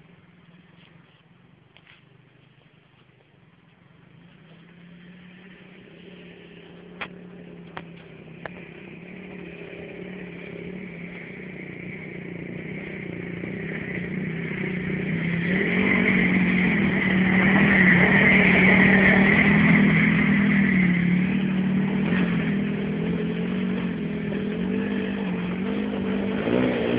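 Single-cylinder off-road engine (dirt bike or quad) running at a fairly steady pitch, growing steadily louder over the first two-thirds and easing slightly near the end. A few sharp knocks come around a third of the way in.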